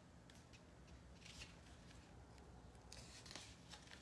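Faint rustling of paper as the pages of a small tarot guidebook are leafed through: a few soft swishes, about a second in and again around three seconds in, over a low steady room hum.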